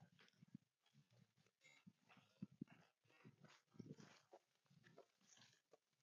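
Faint, irregular swishing and crunching of tall grass under footsteps as people walk through a grassy field.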